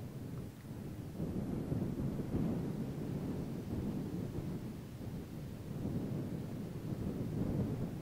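Wind buffeting the microphone outdoors: a low rumble that swells and eases, with no motor or other distinct sound.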